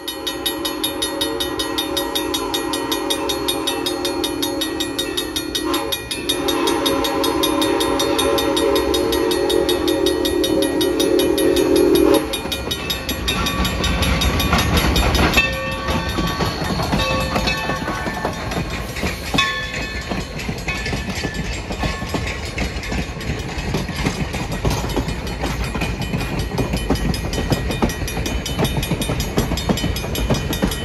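Steam locomotive whistle sounding two long blasts, each about six seconds. Then the locomotive and its coaches pass close by with a heavy steady rumble and wheel clatter on the rails.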